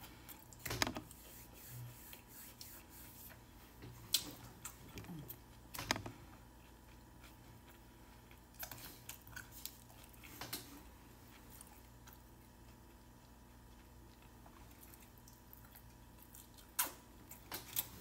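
A person chewing a mouthful of a wrap with the mouth closed, with a few short sharp clicks and smacks spread through the otherwise quiet chewing.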